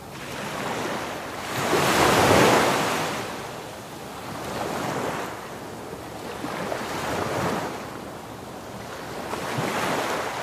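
Surf washing up a sandy shore in swells that rise and fade, loudest about two seconds in, with wind buffeting the microphone.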